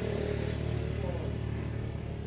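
Steady low hum of an engine running in the background.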